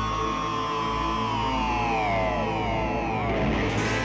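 Live rock band with electric guitars and keyboards playing. A held high note slides slowly down in pitch over about three seconds and breaks up near the end, over a sustained low backing.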